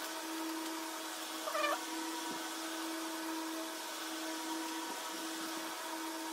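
A steady electrical hum runs throughout. About a second and a half in comes one short call whose pitch bends, and hands faintly rustle moss and potting mix on newspaper.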